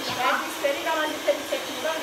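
Steady whooshing noise, like a fan running, with talking voices over it.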